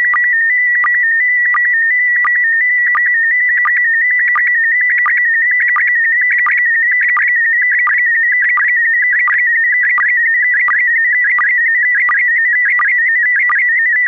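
Slow-scan TV (SSTV) picture signal: a continuous warbling tone hovering around a high pitch, broken by short regular lower blips about every 0.7 seconds that mark each scan line of the image being sent.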